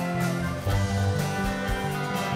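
Live country band playing an instrumental passage, guitars to the fore over bass and drums.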